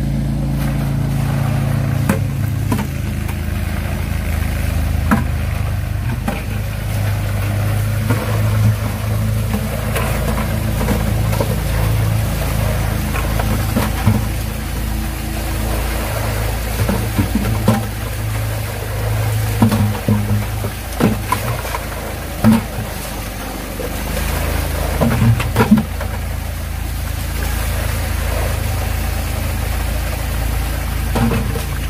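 Water poured from plastic buckets into rock-filled tubs, with water splashing out of the drain pipe ends and occasional sharp knocks of the plastic buckets. Underneath runs a steady low drone whose pitch shifts every few seconds, likely background music.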